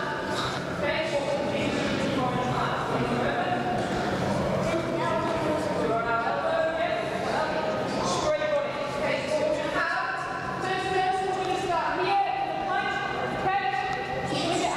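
Speech in a large sports hall: a voice talking steadily, explaining an exercise, with the hall's echo.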